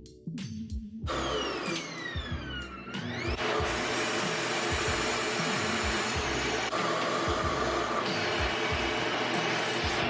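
RevAir reverse-air vacuum hair dryer switching on about a second in: its motor whine falls in pitch, rises again briefly, then settles into a steady rush of air. The dryer is faulty and not blowing warm air.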